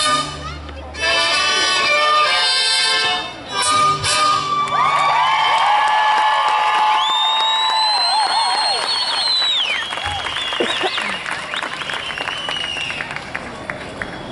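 A mariachi ensemble of violins, trumpets and guitars plays the final chords of a song, stopping about four and a half seconds in. The audience then cheers, with long shouts, a loud high held whistle and applause.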